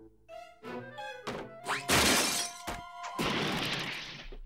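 Cartoon underscore music with a loud crash-and-shatter sound effect about two seconds in, followed by a few clicks and a rushing noise near the end.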